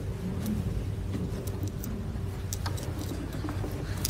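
A wooden chair being carried and set down on carpet, giving a few faint knocks over a steady low rumble of room noise.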